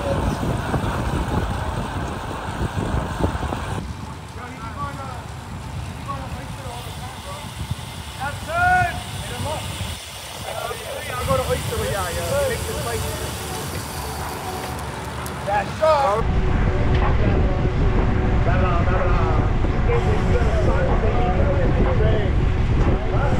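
Wind rumbling over an action camera's microphone as a group of road cyclists rides along, loudest from about two-thirds of the way in. A quieter stretch in the middle carries short, high chirps.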